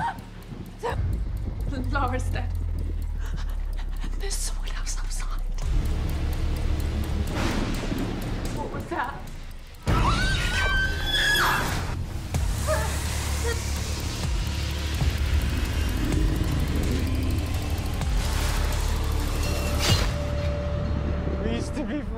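Horror trailer sound mix: music over a heavy low rumble. About ten seconds in, a brief drop is followed by a sudden loud hit and a high, held vocal cry, and then the dense score continues.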